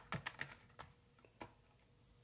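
Toy-car blister packs being handled: several light plastic clicks and taps in the first second and a half as a carded die-cast car is put down and the next one picked up.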